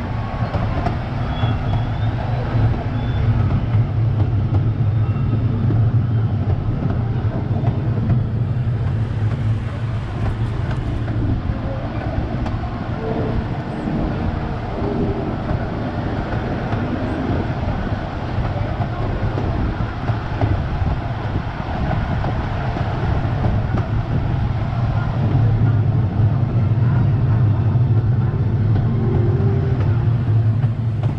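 Casey Jr. Circus Train ride cars rolling along narrow-gauge track, a steady low rumble throughout.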